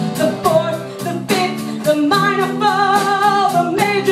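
Live band music: a woman singing lead over strummed acoustic guitar and drums, with a steady beat. About halfway through she holds one long note with vibrato.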